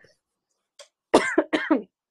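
After about a second of silence, a person makes a short two-part vocal sound that sets in sharply.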